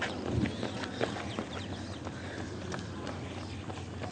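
Runners' footsteps on an asphalt road as they pass close by: irregular footfalls, a few a second, over a low steady hum.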